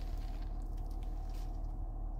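Steady low hum inside a 2023 Mitsubishi Outlander's cabin, with a few faint ticks from the phone being handled.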